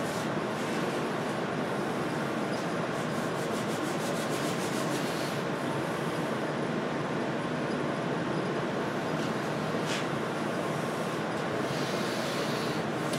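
A steady, even background noise, with a few faint light clicks about two to five seconds in and one more near ten seconds.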